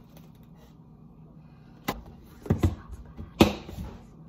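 A few sharp knocks and clicks from handling a metal spoon and plastic containers, beginning after a quiet first two seconds, with the loudest knock about three and a half seconds in.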